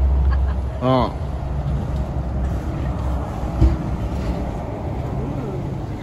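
Steady low outdoor rumble with a short voice sound about a second in and a single dull thump near the middle.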